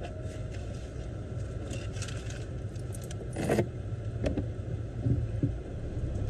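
Steady low hum of an idling car heard from inside the cabin, with a few short rustling and clinking handling noises; the loudest comes about halfway through.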